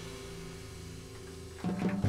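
A jazz combo's closing chord held and slowly fading on piano and upright bass, then a louder final chord struck near the end.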